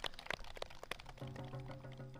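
Korean folk performance music: sharp percussion strikes, then a steady held note from a little over a second in.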